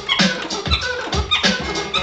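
Vinyl record scratched by hand on a turntable and cut with the mixer's crossfader, over a drum beat: quick rising and falling sweeps of scratched sound on top of a kick about twice a second.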